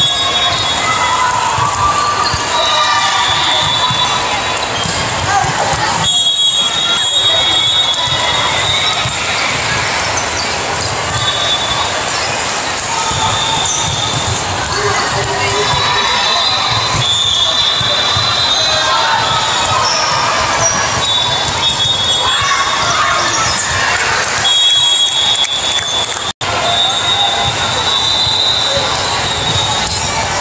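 Busy indoor volleyball gym: many indistinct players' and spectators' voices echoing in a large hall, with the thuds of volleyballs being hit and bounced. Short high-pitched squeaks sound again and again.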